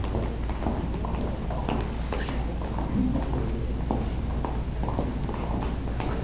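Several dancers' shoes stepping and tapping on a hard floor as they travel round in a circle: irregular light taps and scuffs over a steady low hum.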